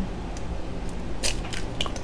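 An egg being broken open over a silicone dough-kneading bag: a few faint, short crackles and soft squishes about a second in.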